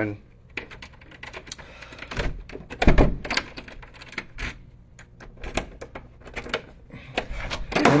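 Keys jingling and clicking in a front-door lock as the door is unlocked and opened, with a few louder knocks and thumps about two to three seconds in.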